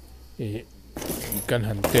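Short metallic jingling followed by a sharp click near the end, from handling a mains socket board, with a man speaking in between.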